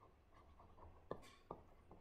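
Near silence, with the faint taps and light scratching of a stylus writing on a tablet screen, including two soft ticks a little after a second in.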